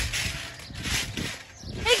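People bouncing on a trampoline: a rhythmic run of mat thuds and rustling, a few per second, with a girl's shout near the end.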